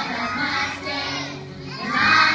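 A preschool children's choir over a backing music track: many young voices, less clearly sung than the lines just before, with the group's singing swelling again at the very end.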